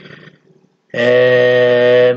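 A man's voice holding one long, flat 'uhhh' hesitation sound at steady pitch, starting about halfway in after a brief pause and lasting about a second.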